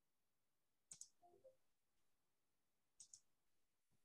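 Near-silent room tone broken by two faint double clicks, about a second in and again about two seconds later, as from a computer mouse at a desk.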